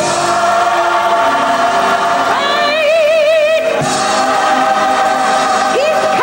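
Gospel choir singing long held chords, with a solo woman's voice rising over them about halfway through and wavering in a wide vibrato before settling onto another held note.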